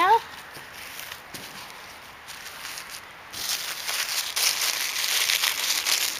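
Lace trims and fabric rustling and crackling as they are handled and laid out, quiet at first and then a denser, louder rustle from about three seconds in.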